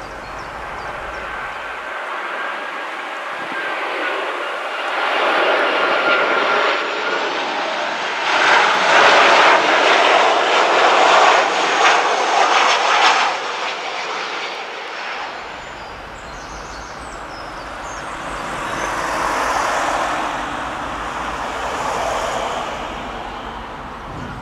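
Boeing 737 airliner on final approach passing low overhead: the jet engine noise builds with a faint gliding whine, is loudest around the middle, then fades, with a smaller swell near the end.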